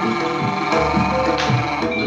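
Jaranan dance music: a Javanese gamelan-style ensemble of drums and pitched percussion with sustained melody notes over a steady beat.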